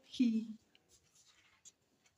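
A brief breathy vocal sound from a woman, falling in pitch, in the first half-second, then near silence with a few faint ticks.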